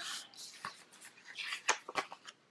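Loose paper planner page rustling and sliding as it is handled and turned on the desk, with a few light clicks and taps, most of them near the end.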